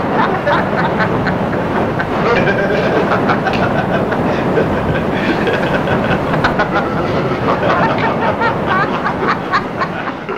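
Loud laughter from many overlapping voices, layered into a dense, unbroken din with wavering vocal pitches and rapid 'ha' bursts.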